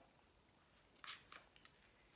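A few faint snips of scissors cutting open the plastic wrapping of a fabric package, starting about a second in; otherwise near silence.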